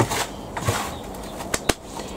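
Hands stirring potting compost mixed with perlite and vermiculite in a plastic tray: a rustling scrunch, with two sharp clicks close together near the end.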